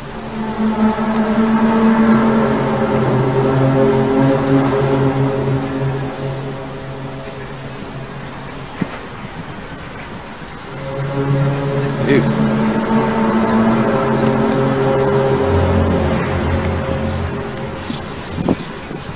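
A loud, low drone of several steady held tones together, the unexplained 'strange sky sound'. It swells up, dies down about a third of the way in, then builds up again and eases near the end.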